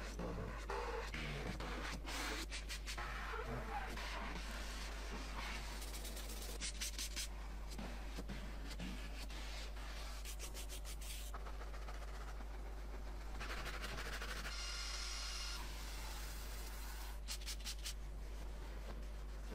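Cloth and wet wipe rubbing and scrubbing over car interior trim, plastic door panels and a leather seat, in uneven strokes over a steady low hum, with a brief high squeak late on.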